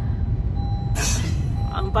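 Steady low rumble inside a car's cabin, from the running car, with a short hiss about a second in.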